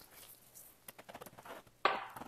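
Salt shaken from a shaker onto vegetables on a parchment-lined baking tray: faint, scattered ticking of grains and shaker, most of it a second to a second and a half in. One louder brief sound comes just before the end.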